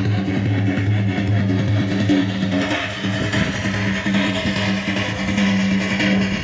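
Music led by guitar, over a steady held low note.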